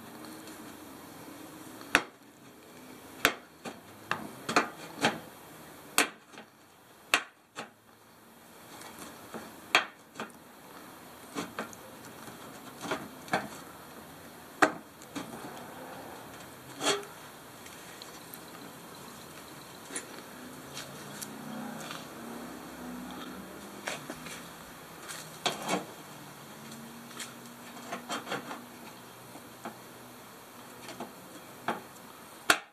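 Tin snips cutting the sheet-steel body panel of a vehicle's front guard to enlarge a hole: irregular sharp snips, roughly one every second or two, with quieter handling sounds between them.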